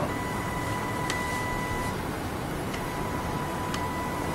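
HIFU machine beeping a steady tone for about two seconds as the handpiece fires a line of treatment shots, the tone coming back faintly near the end, with a few faint ticks over a steady machine hum.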